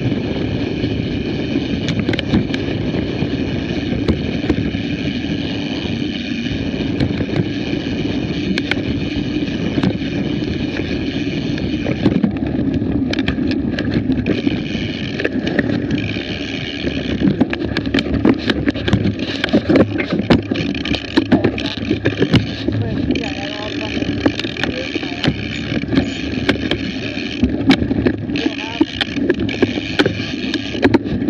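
Mountain bike riding over a dirt singletrack, recorded on a moving action camera: continuous rumble and rush of the ride, with frequent rattling clicks and knocks over the bumps. A high, steady buzz runs through it and cuts out and back in several times in the second half.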